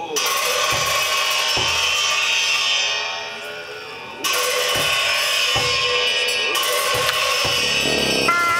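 Tibetan Buddhist ritual music: cymbals clashing several times, with a fresh clash about four seconds in, over scattered drum beats and sustained held tones.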